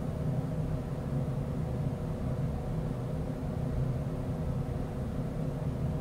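Steady low background hum of room tone, with several faint constant tones in it and no change throughout.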